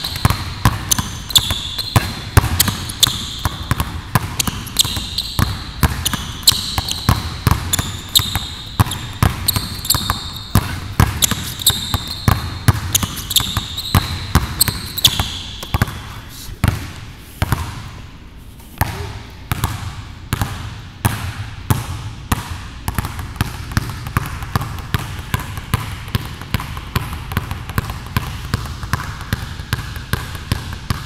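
Two basketballs dribbled fast on a hardwood gym floor, a quick unbroken run of bounces that thins briefly a little past halfway, then picks up again.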